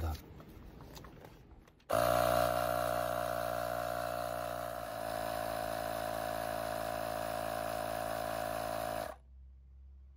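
AstroAI 20V cordless tire inflator's compressor starts about two seconds in and runs steadily, pumping up a trailer tire. Its pitch drops slightly about halfway as the pressure builds. It cuts off abruptly near the end, the automatic shut-off as the tire reaches the 50 PSI set pressure.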